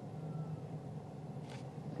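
A car's engine running at idle, a steady low hum heard from inside the cabin.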